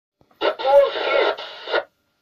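A brief thin, narrow-sounding voice, as heard over a radio, lasting about a second and a half and then cutting off.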